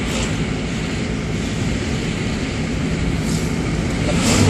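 Steady road and engine noise inside a moving car, with a brief rush as an oncoming truck passes close at the start and another rush of passing traffic about three seconds in.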